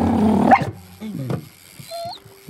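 Puppy vocalizing: a held cry that ends in a sharp rising yip about half a second in, then two short falling whimpers.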